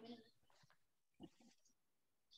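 Near silence, with the faint end of a spoken word at the start and a brief, faint voice sound a little after a second in.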